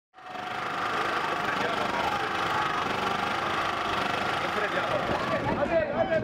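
Many voices of a marching crowd at once: a steady, dense babble, with one voice standing out near the end.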